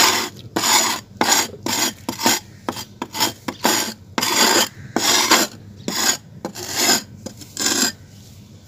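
Bare hands scraping and crumbling clumps of dry red soil: an irregular run of short gritty scrapes, roughly two a second.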